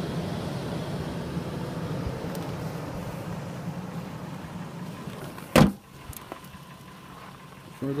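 A steady low hum in the 2005 Toyota Tacoma's cab, then the truck's door slammed shut once about five and a half seconds in, after which the hum is much quieter.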